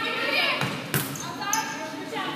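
A volleyball struck sharply by a player's arms or hands about a second in, during a rally, with high girls' voices calling out and the echo of a large gymnasium.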